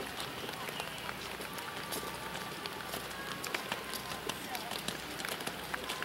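A horse trotting on wet arena footing, its hoofbeats over a steady hiss of falling rain, with faint voices in the background.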